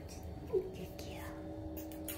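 A person whispering softly over a steady low hum, with a short pitched sound about half a second in.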